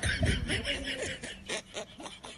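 High-pitched snickering laughter in quick short bursts, louder at first and trailing off toward the end.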